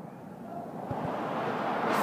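Road traffic noise from the adjacent street, a vehicle's sound building steadily louder toward the end, with a faint knock about a second in.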